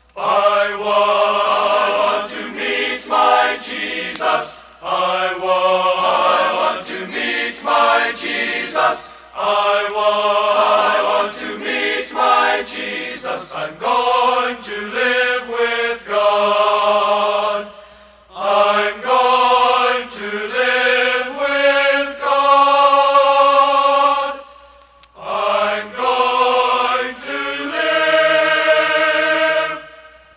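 Male choir singing in close harmony, in sustained phrases broken by short pauses for breath.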